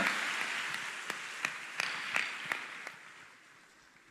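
Audience applauding, the applause fading away steadily, with a few last separate claps standing out near the middle before it dies out.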